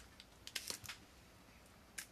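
Faint clicks and light taps of a plastic paint pot being handled on a desk, with one sharper click near the end.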